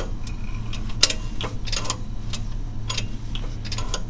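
Light, irregular metallic clicking, a few clicks a second with the loudest about a second in, as the Kohler Command Pro 7 single-cylinder engine is turned over slowly by hand with its valve cover off. A steady low hum runs underneath.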